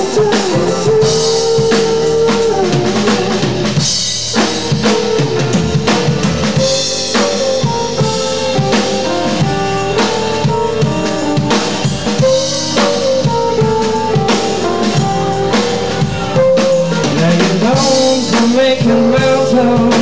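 Live rock band playing an instrumental passage: a drum kit keeps a beat under guitars and keyboard carrying a melody.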